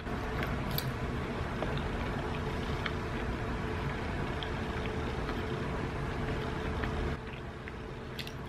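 Steady drone of a car engine from outside, with a faint held tone, that drops away about seven seconds in. Small wet chewing clicks sit over it.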